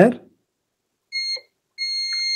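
Digital multimeter's continuity beeper on a laptop motherboard: a short high beep about a second in, then a steady beep of the same pitch from near the end as the probes settle. The steady tone signals a direct, low-resistance connection between the two probed points.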